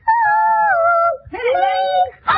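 A high-pitched voice holding two long, wavering notes, the second lower than the first.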